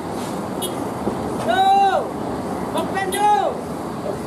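Cars, an SUV and a minibus running on a steep hairpin road, a steady traffic sound. Two short pitched calls rise and fall over it, one about a second and a half in and another about three seconds in.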